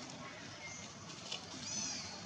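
A baby macaque gives a short, high-pitched cry near the end, the kind a nursing infant makes when asking for milk, after a couple of fainter peeps.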